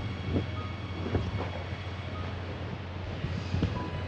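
A steady low hum with an even background hiss, and a few faint brief rustles of movement.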